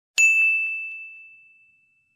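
A single bright bell-like ding sound effect: one sharp strike with a clear high ringing tone that fades away over about a second and a half.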